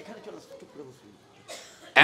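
A short cough near the end of a pause in a man's talk through a microphone, with faint voices before it.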